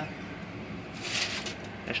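A brief scrape of ceramic plates being shifted on a wire oven rack, about a second in.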